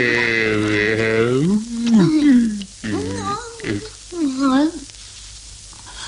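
Cartoon characters' voices making wordless, drawn-out sounds that waver and glide in pitch. A long wobbling sound comes first, then a rise-and-fall glide, then two shorter wavering calls about halfway through.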